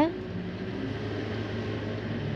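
Battered tempeh slices deep-frying in hot oil in a wok: a steady sizzle and bubbling of the oil.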